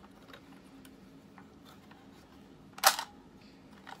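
Light clicks of a plastic toy trailer being handled, then one sharp, loud plastic snap near the end, as its action feature is set off.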